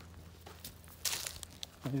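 A footstep crunching dry straw and dead corn leaves about a second in, with faint crackling rustles around it.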